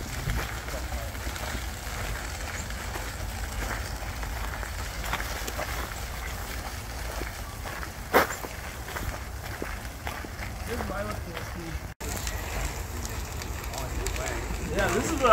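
Footsteps and wheels crunching on a compacted crusher-dust gravel path over a steady low rumble, with faint voices. A single sharp knock comes about eight seconds in.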